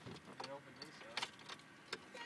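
Two sharp clicks, the second about three-quarters of a second after the first, from switches being worked on a vehicle's dashboard controls. Faint talk can be heard in the cabin.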